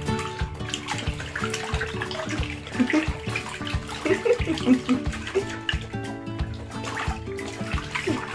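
Water sloshing and splashing in a plastic baby bathtub as a newborn is bathed, with background music playing over it.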